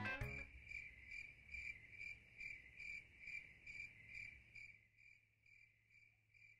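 A cricket chirping faintly at an even pace of about two to three chirps a second, fading away near the end.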